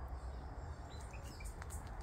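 Quiet garden ambience: a few faint, scattered bird chirps over a low steady rumble.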